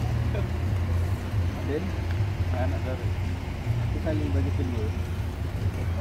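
People talking faintly over a steady low rumble.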